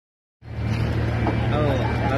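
A vehicle engine running steadily at idle, starting about half a second in, under the voices of a crowd of people talking.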